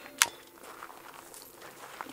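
A single sharp metallic click from a KelTec CP33 .22 pistol as it is cleared at the end of a shooting string, with quiet background after.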